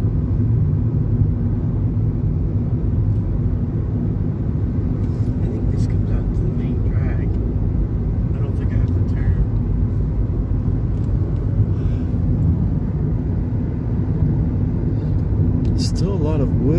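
Steady low rumble of a car's engine and tyres on an asphalt road, heard from inside the moving car's cabin.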